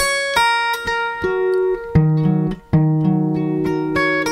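Acoustic guitar in an open alternate tuning (E G# B F# B Eb), fingerpicked: a phrase of single notes that ring on over one another. There is a brief break about two-thirds of the way through.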